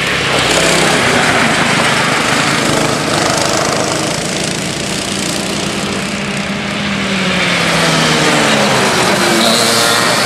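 Two Honda cadet karts' Honda GX160 single-cylinder four-stroke engines running at speed as the karts lap the track, the engine notes rising and falling as they accelerate and brake through corners. Loudest about a second in and again near the end, when the karts are closest.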